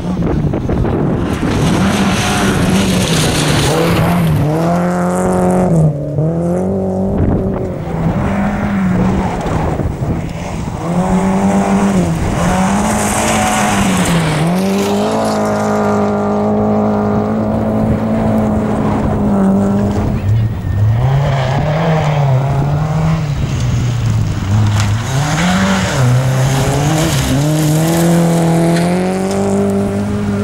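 Rally car engine revving hard on a gravel stage, its pitch climbing and dropping again and again through gear changes and lifts for corners.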